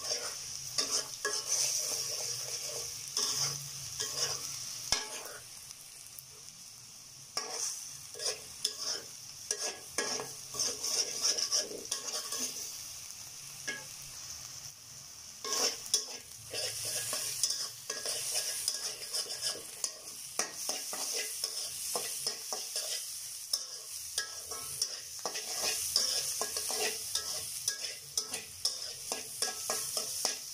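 Beaten egg sizzling in hot oil in a wok while a metal spatula scrapes and knocks against the pan, scrambling it in quick irregular strokes.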